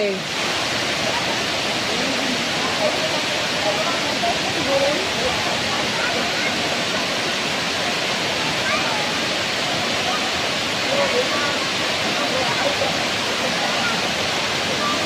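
Curtain waterfall, many thin streams pouring down a cliff face into a rocky pool, making a steady, even rush of water. Faint voices of people in the pool come through it now and then.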